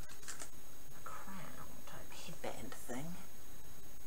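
A woman speaking very quietly, almost in a whisper, with faint rustling from a small toy accessory in her hands.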